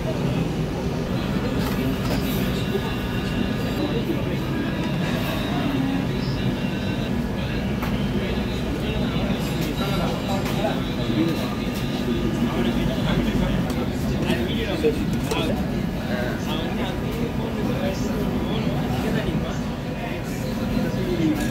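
Busy commercial kitchen: a steady low rumble, as from a gas wok burner and kitchen machinery, under background voices and occasional clinks of utensils and plates.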